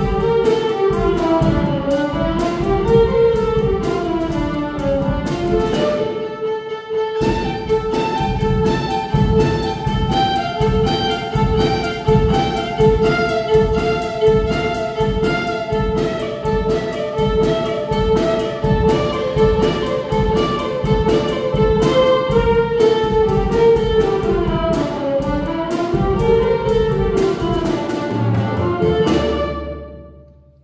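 A small ensemble of violins with a drum kit playing a South American dance, the drums keeping a steady beat under the bowed melody. The music breaks off briefly about six seconds in, then resumes, and the piece ends with a final held low note near the end.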